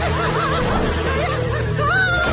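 High-pitched cartoon-character giggling and snickering over steady background music.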